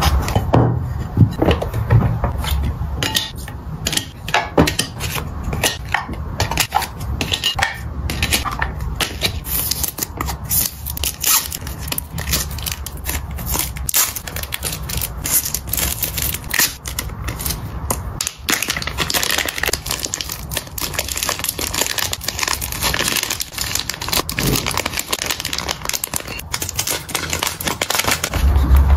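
Close-miked crinkling and rustling of paper and clear plastic photocard sleeves being handled and folded, with many small sharp clicks and crackles.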